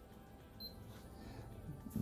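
Quiet room tone with one short, high-pitched electronic beep a little over half a second in.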